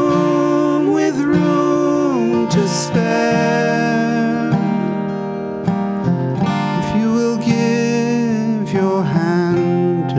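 Acoustic guitar strummed and picked at a steady level, with a woman's voice holding a sung note over it in the first seconds.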